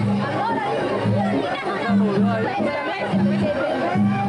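Several people chatting at once over background music with steady low sustained notes.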